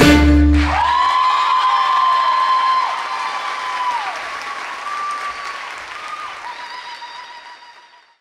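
The recorded song's last held chord stops under a second in, giving way to audience applause with long, high cheering calls that slide down at their ends; the applause fades away toward the end.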